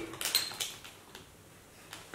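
A few light clicks and crinkles of a plastic candy-bar wrapper being handled, bunched near the start with a couple more later on.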